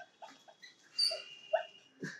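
A man's stifled laughter: a few short, high-pitched giggles, the strongest about a second in.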